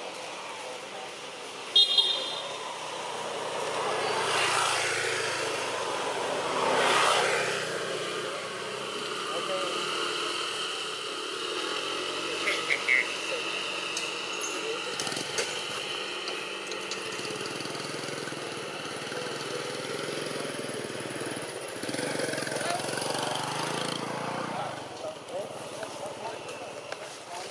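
Outdoor background noise: people's voices, a motor vehicle passing by, and a short, high toot about two seconds in.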